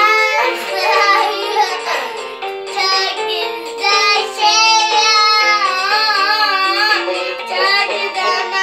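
A young child singing into a toy microphone over backing music with a run of held keyboard-like notes, the sung notes wavering in pitch.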